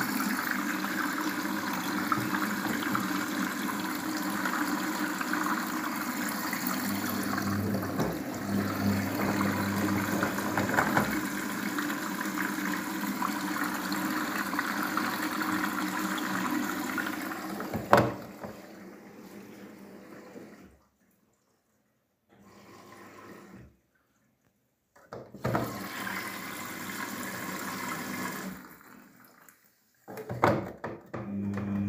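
Daewoo DWD-FT1013 front-loading washing machine taking in water through its detergent dispenser drawer: a steady rush of water that stops with a click about eighteen seconds in. A shorter spell of rushing water follows near the end.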